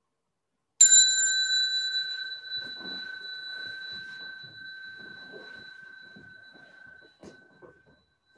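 A small meditation bell struck once, ringing a clear high tone that fades slowly over about six seconds: the signal to stand for prostrations. Under the fading ring come faint rustling and soft knocks as people get up and move, with a small click near the end.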